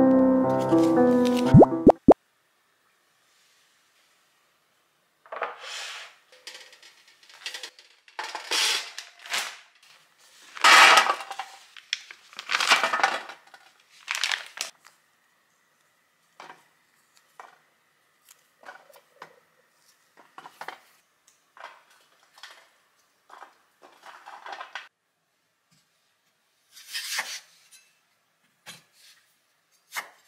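Music for the first two seconds. After a short silence comes a run of short handling noises with light clinks and knocks as food and packages are handled on stainless steel trays on a kitchen counter, the loudest about halfway through and sparser later on.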